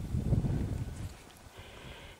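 Wind buffeting the microphone: an irregular low rumble that dies down after about a second.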